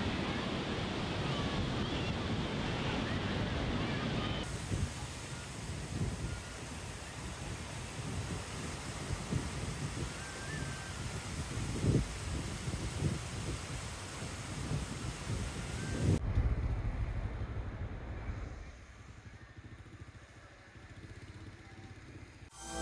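Surf breaking on a beach with wind buffeting the microphone and faint voices of people in the water. About sixteen seconds in it gives way to a low rumble of road traffic, which fades down near the end.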